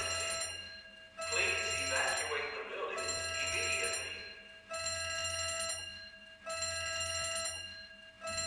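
An electronic building alarm ringing in repeated bursts, about one every second and a half to two seconds with short breaks between, as an office is evacuated. Indistinct voices of people can be heard under it early on.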